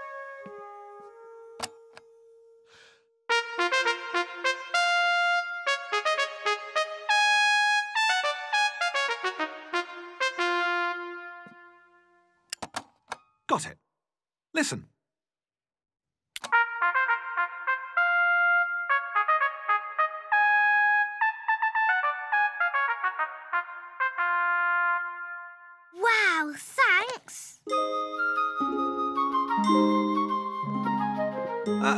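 Trumpet playing a fanfare, a run of bright held notes. It stops, a few sharp clicks sound, and then the fanfare plays again. Near the end comes a short sliding sound.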